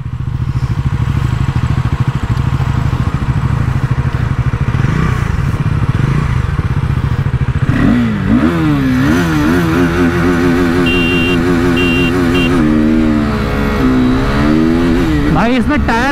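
Single-cylinder 373cc motorcycle engines of a KTM RC 390 and a Bajaj Pulsar NS400Z running steadily at the line. About eight seconds in, they launch hard: the engine note climbs, drops at each quick upshift and climbs again as the bikes accelerate.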